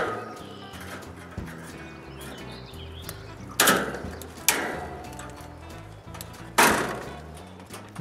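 Bolt cutters snapping through the steel wires of concrete reinforcing mesh: three sharp cuts about a second and three seconds apart, each leaving a short ringing tail, over background music.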